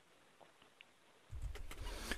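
Near silence with a few faint clicks, then a little past halfway a microphone line cuts in suddenly with a steady low hum and hiss.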